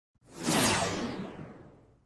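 Whoosh sound effect for an animated logo intro: it swells up within half a second, then fades out over about a second and a half as its hiss sinks lower.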